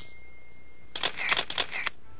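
Single-lens reflex camera shutter clicks as a title sound effect: a rapid burst of about seven clicks starting about a second in.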